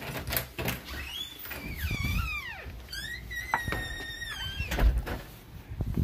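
A door squeaking as it is opened: two long high-pitched squeals, the first wavering in pitch and the second held steady, among a few light knocks, then a heavy thump near five seconds in as it shuts.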